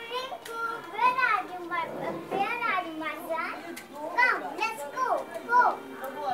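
Young children's high-pitched voices talking, with no clear words.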